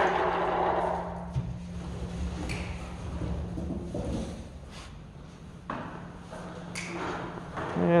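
Room noise with a steady low hum, a rush of noise that fades away about a second in, and a few scattered knocks and clicks.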